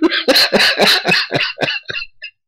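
A man laughing hard: a rapid run of breathy bursts, about five a second, that grow weaker toward the end.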